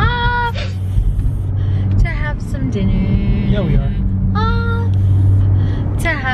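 Steady low rumble of a car heard from inside the cabin. A woman's voice comes over it in a few short, drawn-out sounds like sung notes, at the start, about two seconds in and again after four seconds.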